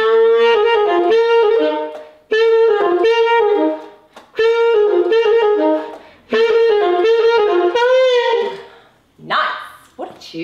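Solo alto saxophone playing a short jazzy tune in four phrases with brief breath gaps between them; the final note, about eight seconds in, bends and falls away. A brief vocal sound follows near the end.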